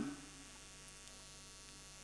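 Faint, steady electrical mains hum in the microphone's sound system during a pause in speech. A man's voice trails off right at the start.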